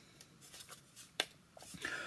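Wooden board-game tiles being handled and set down on the table: a few faint taps and one sharp click about a second in.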